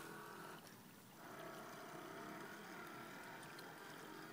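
Faint, steady whine of radio-controlled model boat motors running out on the water. It dips out briefly just before a second in, then comes back and holds steady.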